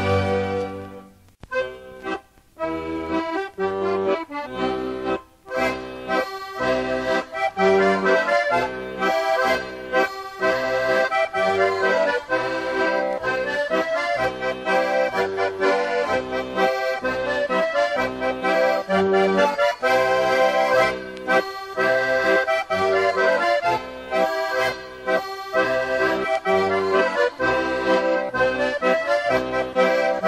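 Traditional folk-style accordion music with a regular bass beat, briefly dipping a few times near the start.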